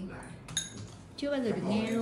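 A single sharp clink with a brief metallic ring as a tape reel is pressed onto the spindle of an open-reel tape deck.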